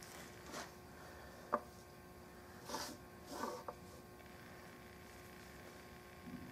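Faint wood-on-wood handling in a quiet room: a light click about a second and a half in, then two short rubbing scrapes around the middle, as a wooden gun forearm is set and shifted on a wood stock blank.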